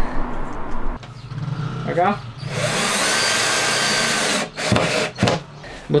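Cordless drill running steadily for about two seconds, boring into the plywood and wooden batten of a cabinet, followed by two sharp knocks.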